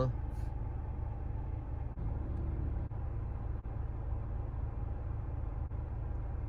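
Car engine idling, a steady low rumble heard inside the cabin, with a few faint clicks.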